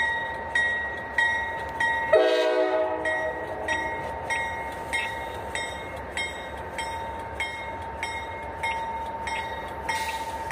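Railroad grade-crossing bell ringing steadily, a little under two strikes a second, with the approaching train's horn sounding one long blast for the crossing from about two seconds in to about four seconds in.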